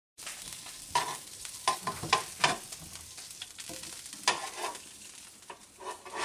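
Sausages sizzling in a frying pan, a steady hiss, with several sharp clicks of metal tongs against the pan as the sausages are handled, the loudest in the first half.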